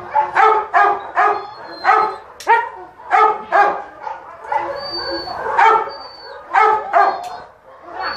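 A dog barking repeatedly, about a dozen short barks at uneven intervals, one of them a rising yelp about two and a half seconds in.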